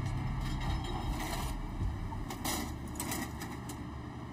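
Steady low drone of a fishing boat's onboard machinery, with a few short handling noises over it.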